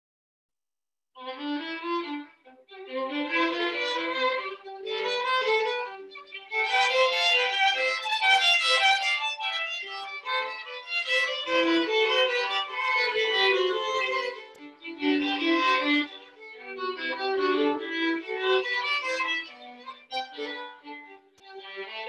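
Two violins playing a duet, starting about a second in and going on in phrases with brief pauses between them.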